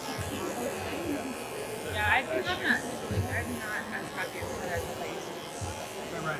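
Cordless dog clipper running with a steady buzz as it cuts down the neck coat, under background chatter and music.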